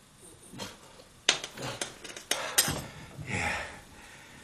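A metal spoon clinking sharply about four times against a plant pot as a dose of medicine is tipped into the soil, followed by a short breath.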